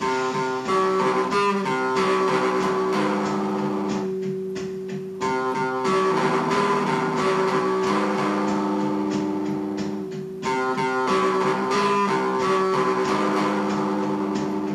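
Electric guitar played with a pick: chords and notes are struck and left to ring and slowly fade, with fresh strikes about every five seconds.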